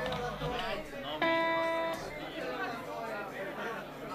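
A single guitar note plucked about a second in, ringing clearly for under a second as it fades, over a room full of crowd chatter.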